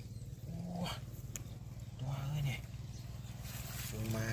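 Two short, low voiced sounds, like brief hums or grunts from a man's voice, about a second and a half apart.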